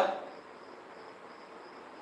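Faint, steady, high-pitched insect chirring, cricket-like, in the background.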